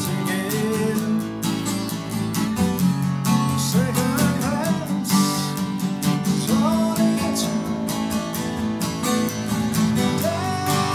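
Folk song played on strummed steel-string acoustic guitar over a plucked double bass line, with short wavering melodic phrases about four and seven seconds in.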